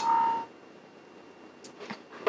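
A short electronic alert tone from the computer, about half a second long, starting with a click. It is followed by a few faint clicks near the end.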